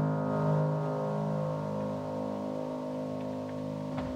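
A keyboard instrument holding a final chord of several steady notes, fading slightly and cutting off abruptly at the very end.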